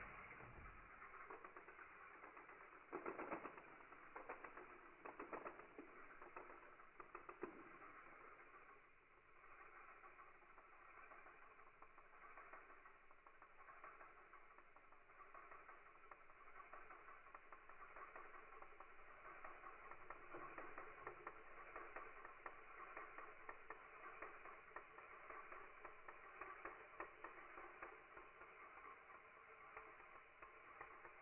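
Greatest Raphael Beyblade Burst top spinning on a bare palm: a faint, steady whir with a few light clicks in the first several seconds.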